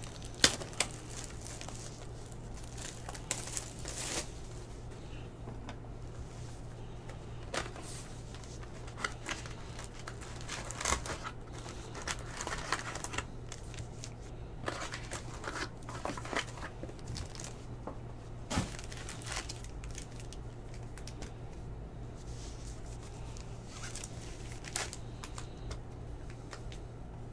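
Cellophane wrap torn off a cardboard trading-card hobby box and the box opened, then foil card packs crinkling as they are handled. Scattered short crinkles and taps come and go over a steady low hum.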